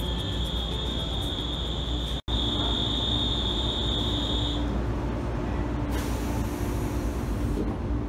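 Steady high-pitched electronic warning tone for about four and a half seconds over the steady hum of a stationary 113 series electric train, then the car's pneumatic sliding doors, renewed under the 40N work, close quietly with a short hiss of air near the end.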